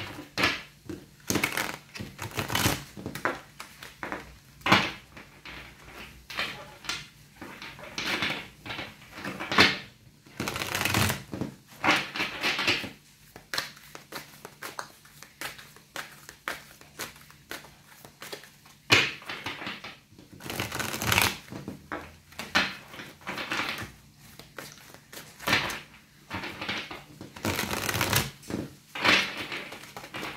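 A deck of gilt-edged tarot cards being shuffled by hand: an irregular run of card rustles and snaps, with a few longer swishes.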